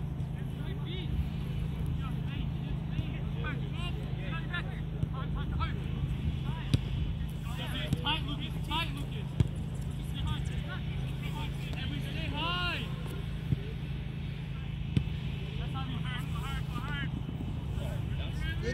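Players and spectators shouting calls across a soccer field, over a steady low rumble. A few sharp thuds of the ball being kicked stand out, spread through the second half.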